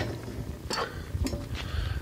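Low, uneven rumble with a few faint clicks, typical of wind and handling noise on a handheld camera's microphone.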